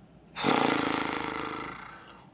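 A woman's loud, exasperated voiced exhale, a groaning blow of breath that starts abruptly and trails off over about a second and a half, a sign of frustration.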